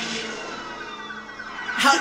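Film car-chase soundtrack: police sirens wailing with car engines under them.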